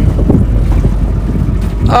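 Motorboat engine running with a steady low rumble.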